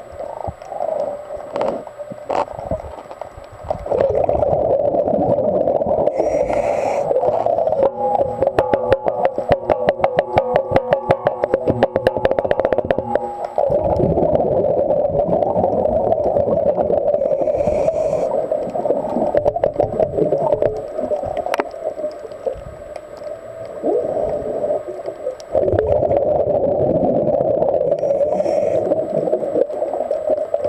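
Underwater gurgling and hiss from a scuba diver's exhaled bubbles, heard through the water. About a third of the way in there is a longer, rattling stretch of rapid bubbling that lasts several seconds.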